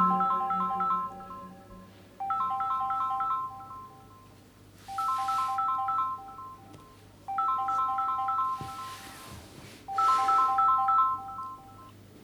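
Mobile phone ringtone: a short, bright melodic phrase of beeps repeated five times, about every two and a half seconds, signalling an incoming call.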